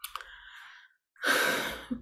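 A woman's audible sigh before she speaks: a faint breath, then a louder breathy exhale about a second in that lasts under a second.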